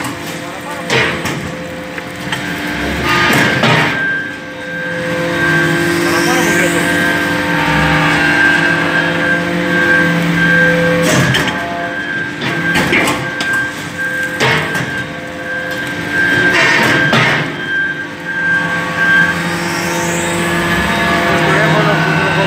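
Hydraulic scrap-metal briquetting press running as it compresses copper chips: a steady hydraulic hum, several sharp knocks and clunks of the ram and chamber, and two brief rising whistles.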